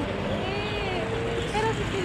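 Steady low rumble of road traffic, with softer voices talking over it.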